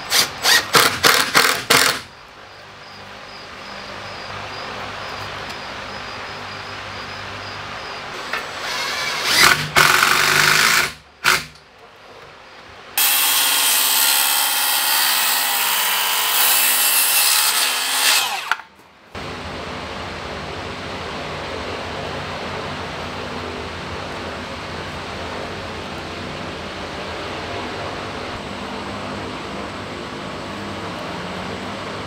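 Cordless drill driving a large screw into timber in a quick run of about seven short bursts at the start. Around the middle come two shorter loud power-tool bursts, and then a cordless circular saw cuts through a wooden timber for about five seconds before stopping abruptly. A steady low background noise follows.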